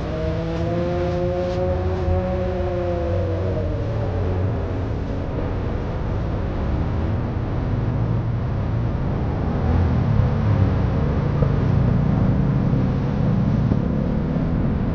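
Car engine and road rumble, heard from a car-mounted camera, growing louder about ten seconds in as the car drives on. A steady pitched hum sounds over it for the first four seconds.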